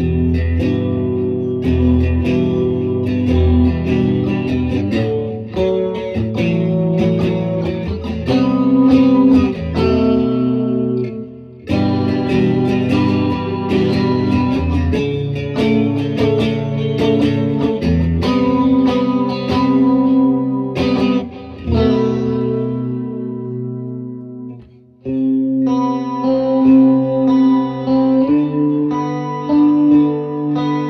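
A Harley Benton Stratocaster-style electric guitar played as chords and picked notes, with brief breaks about a third of the way in and again about three-quarters of the way through. After working the tremolo arm, the player says the guitar has drifted out of tune.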